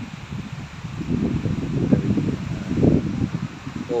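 Typhoon wind buffeting the microphone: a low, gusty rumble that swells about a second in and is loudest around two to three seconds.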